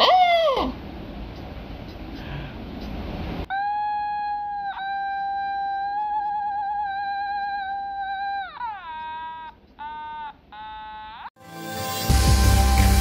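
An Otamatone played: a quick falling squeal at the start, then a long held note with one brief dip and a wavering vibrato in the middle, sliding down and ending in a couple of short notes.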